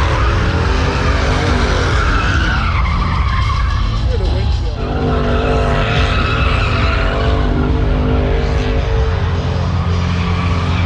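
Car doing a burnout, its engine held at high revs that rise and fall, over the screech of spinning tyres. The revs drop briefly a little before the middle.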